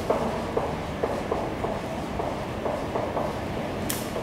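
Dry-erase marker writing on a whiteboard: faint short taps and strokes, with a brief high scratch near the end.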